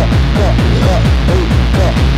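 Mid-1990s techno from a live DJ set: a fast, steady beat on a deep kick drum, with short pitched synth figures over it.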